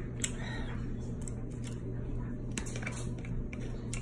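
A few faint, light clicks and taps over a steady low hum, from a person finishing a bowl of noodles and handling a black plastic bowl.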